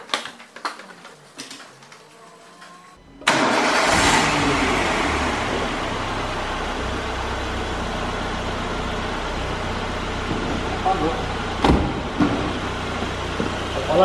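A car's 1.6-litre eight-valve four-cylinder engine cranks and starts about three seconds in, after a few light clicks. It is the first start after an oil and filter change, with the oil pump filling a dry filter, and the oil light goes out during cranking. It then settles into a steady idle, with one sharp knock near the end.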